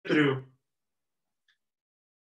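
A man briefly clears his throat, a short voiced sound of about half a second at the very start.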